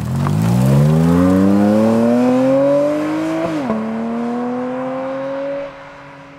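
Porsche 718 Cayman GT4 RS's naturally aspirated 4.0-litre flat-six accelerating hard as the car drives past. The engine note climbs steadily, drops at one quick PDK upshift about three and a half seconds in, then climbs again more slowly and gets quieter near the end as the car goes away.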